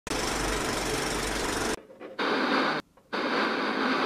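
Intro sound effect: a rattling film-projector clatter for about the first second and a half, then two short bursts of television static hiss.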